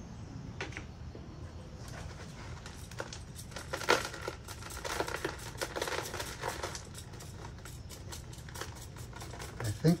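A bonsai root ball being teased out by hand, with loose gritty soil mix crackling and pattering onto a plastic tray in a run of small clicks, busiest in the middle.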